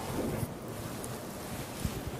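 Steady background hiss, like microphone or room noise, with two brief low knocks, one about half a second in and one near the end.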